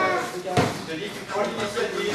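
A single sharp blow landing a little over half a second in, from a savate bout's close exchange of punches and kicks, over background voices in a large hall.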